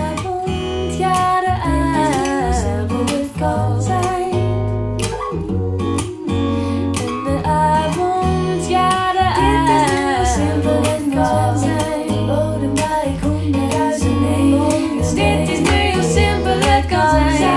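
A Dutch pop song with acoustic guitar, bass and a woman singing in Dutch, played back over DIY mini-monitor loudspeakers fitted with Dayton DSA135 aluminium-cone woofers.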